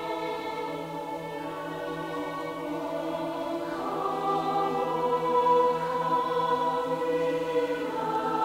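Mixed choir of men's and women's voices singing sustained chords, growing louder about halfway through.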